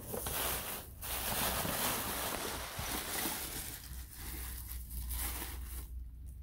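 Tissue paper and a paper gift bag rustling and crinkling as hands dig through them. The rustling is strongest for the first four seconds and dies down over the last two.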